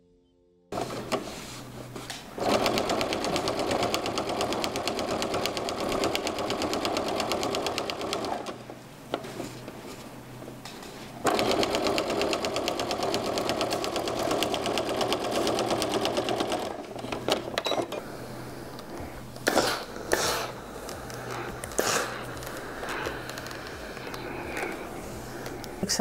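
Domestic electric sewing machine stitching a quarter-inch seam through a border strip, quilt top, batting and backing. It runs fast in two long bursts, easing off between them. After that it stops, and there are irregular rustles and knocks as the fabric is handled.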